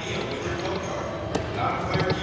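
Buffalo Link video slot machine spinning its reels, with the game's electronic spin sounds and a sharp click about two-thirds of the way in, over the steady background noise of a casino floor.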